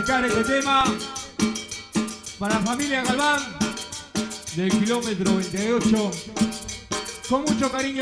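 Guaracha band playing, with drum kit snare and bass drum keeping a steady dance beat under a melody line that slides up and down in pitch.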